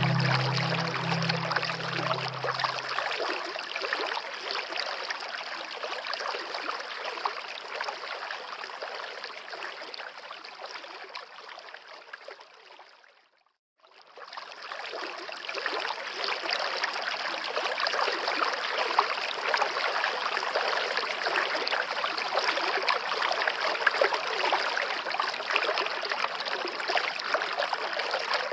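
Water of a small rocky stream rushing steadily, after the last notes of a music piece die away in the first few seconds. Near the middle the water sound fades down to a moment of silence, then comes straight back at full strength.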